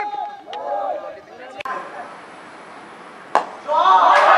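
Voices talking, then steady outdoor background, then a single sharp crack of a cricket bat hitting the ball near the end, quickly followed by players shouting.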